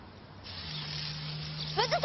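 Water spraying from a garden hose: a steady hiss that starts about half a second in. Quick bird chirps come in near the end.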